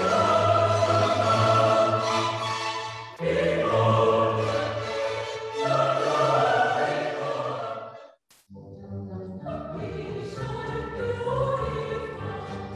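A choir singing a classical piece in sustained, held chords. The music breaks off briefly about eight seconds in, then resumes.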